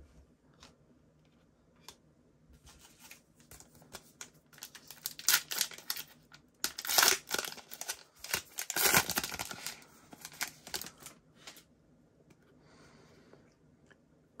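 A 2021 Panini Prizm trading-card pack wrapper being torn open and crinkled by hand, a dense run of sharp crackles through the middle after a few faint taps at the start.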